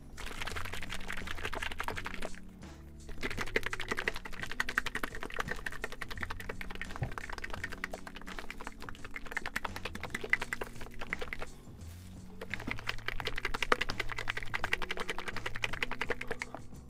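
Plastic bag crinkling and rustling as it is shaken and squeezed by hand, in three stretches with short pauses about two seconds in and again about eleven seconds in. Quiet background music runs underneath.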